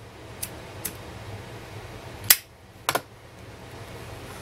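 A handheld lighter clicking as it is struck to light a cigarette: two faint clicks in the first second, a sharp one a little past two seconds in, then a quick double click near three seconds, over a steady low hum.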